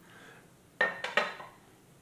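Two quick clinks, about a second in and again just after: a glass perfume bottle and its cap knocking together as it is handled.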